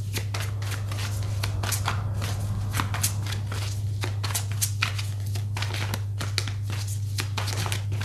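Tarot cards being handled and shuffled, a quick irregular run of light clicks and snaps, over a steady low hum.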